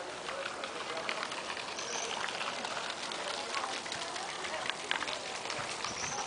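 Outdoor background of faint, indistinct voices chattering at a distance, with scattered short clicks and ticks.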